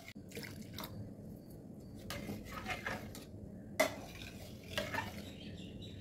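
Steel ladle stirring thick, mushy chana dal payasam in a stainless steel pressure cooker, scraping through the food and against the pot in irregular strokes, with a couple of sharper clinks of metal on metal in the second half.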